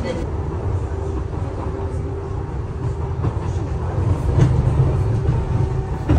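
London Underground train running, heard from inside the carriage as a steady low rumble with a faint hum, growing a little louder near the end.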